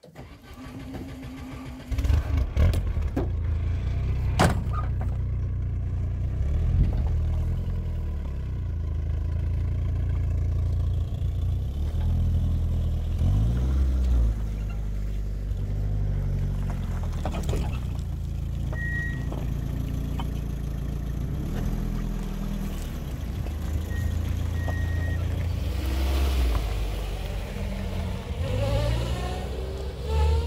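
An engine starts about two seconds in and then runs steadily, its pitch rising and falling a few times.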